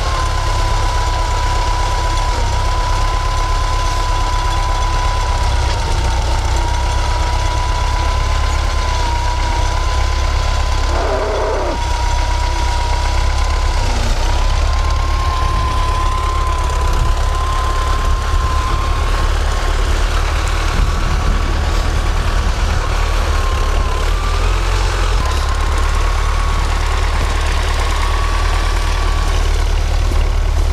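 Tractor diesel engine idling steadily: a constant low rumble with a thin, slightly wavering whine above it.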